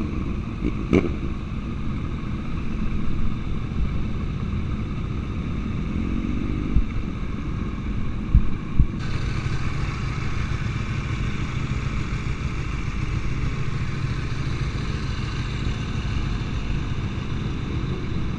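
Group of sport motorcycles riding, heard from one of the bikes: steady engine and road noise, with an engine rising in pitch about six seconds in and a few short knocks a little past the middle.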